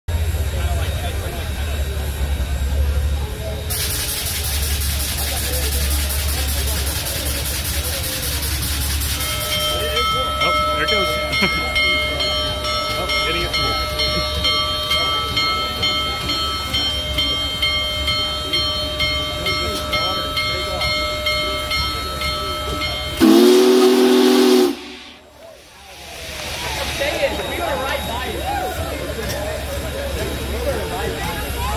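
Union Pacific Big Boy 4014, a 4-8-8-4 articulated steam locomotive, letting off a loud steam hiss for about five seconds, then a thin steady high singing tone, then one short, low, deep steam whistle blast about 23 seconds in, the loudest sound here. A large crowd's voices murmur throughout and swell into cheering after the whistle.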